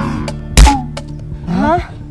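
A single loud thud about half a second in, over steady background music, followed near the end by a short rising voice-like sound.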